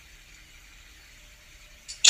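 Faint room tone: a steady low hiss from the recording, with a brief faint noise just before the end.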